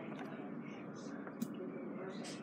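Faint whispering from a person, breathy and without a clear voice, with one sharp click about one and a half seconds in.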